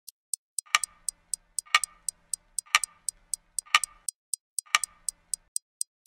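Clock-ticking sound effect: quick light ticks about four a second, with a heavier tock once a second, five times. The ticking stops shortly before the end.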